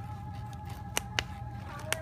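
A few short, sharp plastic clicks as a packaged Halloween tombstone decoration is handled on a store shelf, over a faint steady tone and low hum.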